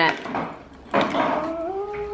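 Plastic sand moulds rustling in their mesh net bag about a second in, then a long, drawn-out vocal "ooh" held for over a second, rising slightly in pitch.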